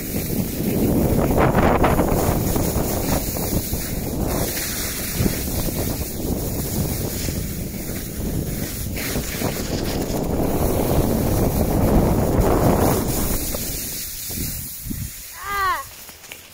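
Wind buffeting the microphone of a phone carried by a downhill skier, with the rush of skis sliding over snow; it eases off near the end, where a child's voice is heard briefly.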